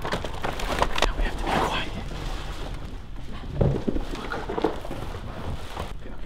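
Large black plastic garbage bag crinkling and rustling with scattered crackles as it is carried.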